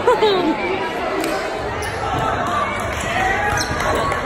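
Spectators chattering in a large echoing gymnasium, with a voice close by at the very start and a few sharp knocks of a volleyball being hit.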